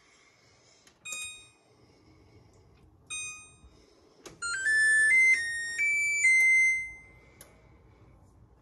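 Electronic beeps from a 2016 LG gas range's touch control panel: two short single beeps as keys are pressed, then a rising melody of several notes ending on a held tone that fades out.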